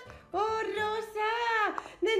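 A high-pitched voice singing two drawn-out notes in a sing-song way, after a brief pause at the start.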